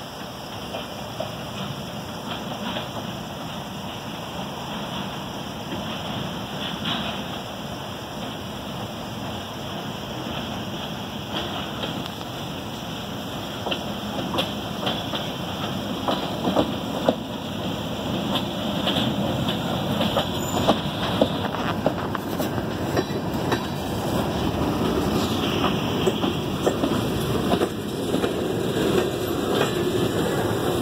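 Freight train backing past with its covered hopper cars leading: wheels rolling on the rails, getting louder as the cars come close. From about halfway on there are frequent sharp clicks and clacks from the wheels.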